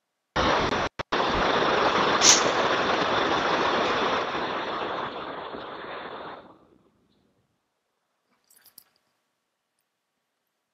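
Loud hiss of microphone static over a web-conference audio feed. It cuts out for a moment about a second in, then thins and dies away after about six seconds as the microphone volume is turned down, followed by a couple of faint clicks. The speakers put the static down to microphone settings that are probably too loud.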